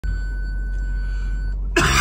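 A man coughs once, loud and short, near the end, over the steady low hum of a car cabin. A faint steady high-pitched tone sounds until shortly before the cough.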